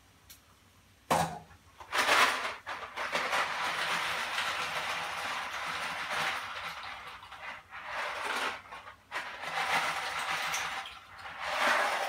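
Dry gluten-free pasta rattling against its cardboard box as it is shaken out into a pot, in long stretches with short pauses. A single knock about a second in.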